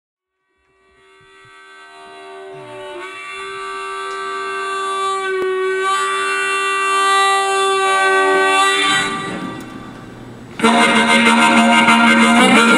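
Harmonica played into a hand-cupped microphone: one long held note that swells in from silence over several seconds, then fades. Near the end the band comes in suddenly with electric guitar, bass and drums.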